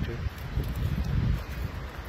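Wind buffeting a phone's microphone outdoors, an uneven low rumble that gusts up and down.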